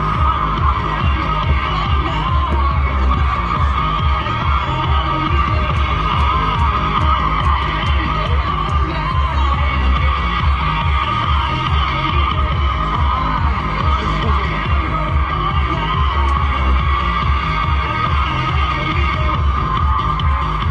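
Loud recorded dance music with a steady, pulsing bass beat.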